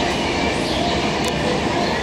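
Steady outdoor background noise: a constant rushing rumble with distant crowd chatter from people in the courtyard below.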